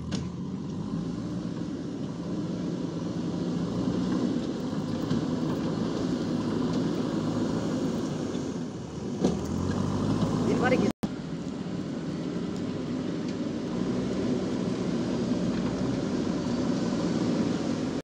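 JCB 3DX backhoe loader's diesel engine running steadily as the machine works and drives on the dirt site, with a rising whine a little past halfway.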